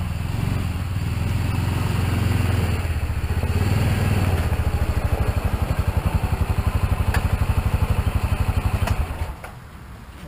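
Honda side-by-side utility vehicle's engine running as it drives up slowly, settling into an even, pulsing idle from about halfway through, then switched off about nine seconds in.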